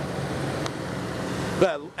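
Steady running hum of the motorhome's 6.5 kW Onan gasoline generator powering the rooftop air conditioners, which cuts off suddenly near the end.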